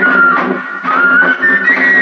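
Music: a high, clear melody whistled over rhythmic strummed strings. The melody line dips about a quarter-second in, then climbs back up.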